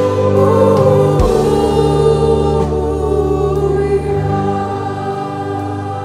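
A choir singing a slow Christian hymn with held instrumental notes beneath the voices, easing down in level toward the end.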